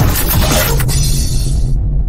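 Electronic intro sting music with a crashing sound-effect hit a little under a second in; the bright high end then fades away while a low bass tone holds.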